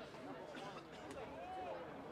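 Faint, indistinct voices of several people talking and calling out across an outdoor football field, with no single clear speaker.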